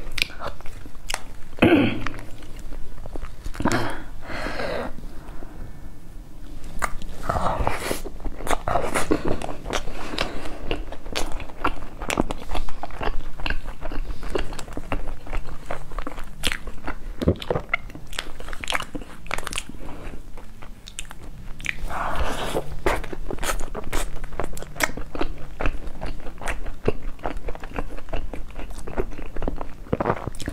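Close-miked eating sounds from a lapel microphone: a person chewing a soft dessert, with many small clicks and snaps and a plastic spoon working in a plastic cup.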